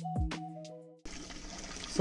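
Background music with a beat fades out about a second in. After a cut it gives way to a steady splashing of water pouring from a pipe outlet into a fish tank that is still filling.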